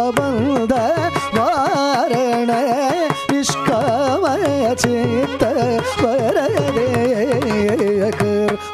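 Male Carnatic vocalist singing with continuous ornamental pitch oscillations (gamakas) over a steady shruti-box drone, accompanied by violin and mridangam strokes.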